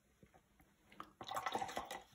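Watercolour brush being rinsed in a pot of water: a few faint taps, then from about a second in a busy run of splashing and small clinks against the pot.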